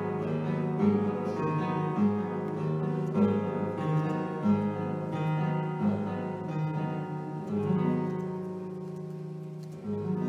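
Solo classical guitar playing a slow instrumental passage: plucked notes and chords about one a second, each left to ring. The last chord, a little under 8 seconds in, rings out and fades until a new one is struck at the very end.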